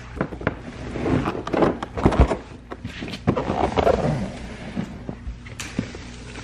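Bubble wrap and plastic crinkling and knocking as a bubble-wrapped salad spinner is handled close to the microphone: a run of sharp crackles and rough rustling bursts that eases off after about four and a half seconds.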